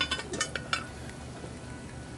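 Heavy cast-iron Dutch oven lid lifted off the pot: a few sharp metallic clinks in the first second, then only the low steady hum of the propane burner heating the pot.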